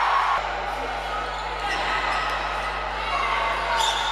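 Live sound of a futsal game in a sports hall: players' and spectators' voices calling out over the hall's noise, with the ball thudding off feet and the court floor. There are a few sharp knocks near the end.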